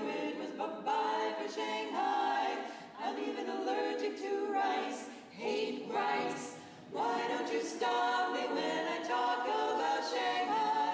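Women's barbershop quartet singing a cappella in close four-part harmony, in sustained chords sung in phrases of a couple of seconds with short breaks between them.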